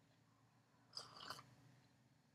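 Faint sipping and swallowing from a mug: a couple of soft mouth sounds about a second in, otherwise near silence.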